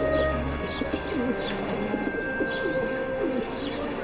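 Birds chirping, with short falling chirps repeating every half second or so and quick warbling lower down, over soft background music of long held notes.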